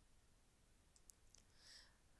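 Near silence in a pause between spoken sentences, with a few very faint clicks about a second in and a faint hiss near the end.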